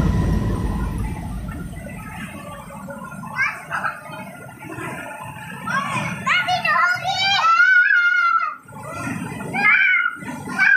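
Young children's voices calling out and chattering as they play, with a long, high, wavering call in the middle. Electronic dance music fades out over the first couple of seconds.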